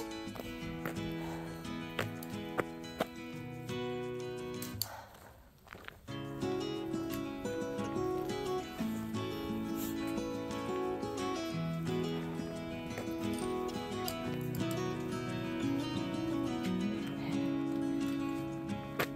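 Background music of held notes that change every second or two. It drops out briefly about five seconds in, then carries on.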